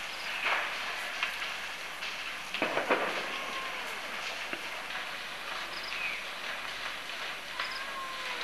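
Faint, steady outdoor background noise, with a few brief, faint calls about half a second in, around three seconds in, and near the end.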